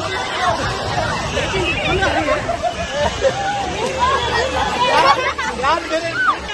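A group of people shouting and laughing over one another, with high shrieks about five seconds in.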